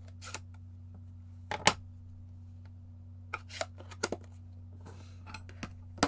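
Scattered light clicks and taps of plastic ink pad cases and a clear acrylic stamp block being handled on a craft table, the sharpest about a second and a half in and a small cluster around the middle. A low steady hum runs underneath.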